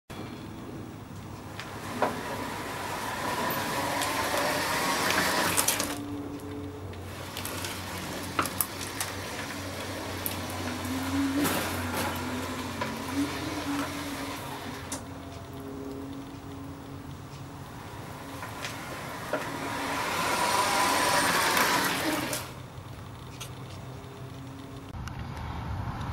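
Small tracked robot platform driving, its drive motors running with a low hum that shifts in pitch, with scattered clicks and two longer surges of rushing noise.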